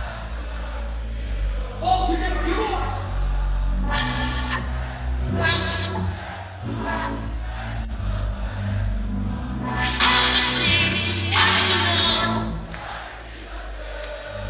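Hardstyle dance music played loud through a large hall's sound system, with a heavy bass line and a vocal line coming in bursts. The music quietens briefly near the end.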